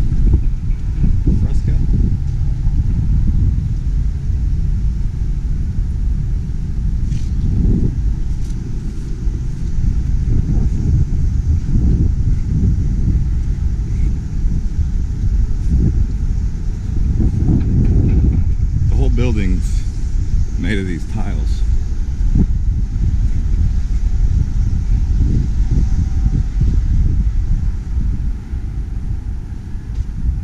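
Outdoor ambience: a steady low rumble, with a few voices of passers-by briefly about two-thirds of the way in.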